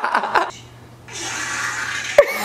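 A short burst of laughter, then about a second of steady rushing hiss that starts abruptly halfway through and cuts off suddenly at the end.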